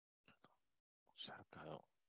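Near silence, with two faint clicks early on and then a faint murmured word or two from a man's voice, under the breath, about a second and a half in.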